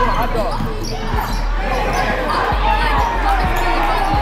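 A basketball dribbled on a hardwood gym floor: several dull bounces at uneven intervals. Nearby voices and a laugh run over it.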